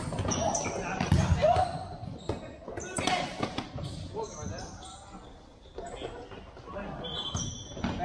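A futsal ball being kicked and bouncing on an indoor court in a large gym hall, giving repeated sharp thuds, with players' indistinct shouts over the play.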